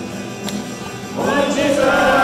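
Congregation singing a gospel-style hymn with musical accompaniment; the voices come in louder a little over a second in.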